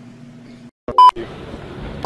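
A single short, loud electronic beep, a pure tone, about a second in, coming in over a low steady hum that cuts out just before it and an outdoor background after it.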